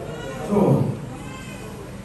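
A man's voice through a microphone: one loud drawn-out exclamation, about half a second in, that slides down in pitch, followed by quieter voice sounds.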